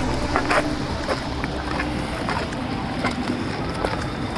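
Wind buffeting the camera microphone in a steady low rumble, with scattered crunching footsteps on a dry dirt and gravel path.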